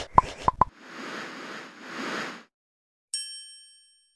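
Logo-animation sound effects: a quick run of pops, then two swishing swells of noise, then a bright chime struck about three seconds in that rings and fades.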